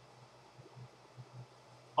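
Faint steady hiss with a low, even hum underneath: background noise in a pause between words, with a few small soft blips.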